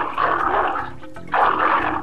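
Cartoon sound effect of a big cat growling twice, with background music.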